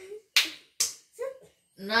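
Two sharp hand smacks about half a second apart, then a brief voice. They are likely forfeit slaps in a counted hand game.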